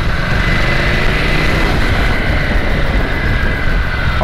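Ducati Scrambler's 803 cc air-cooled L-twin engine running steadily while the bike cruises, mixed with a steady rush of wind and road noise and a faint high whine.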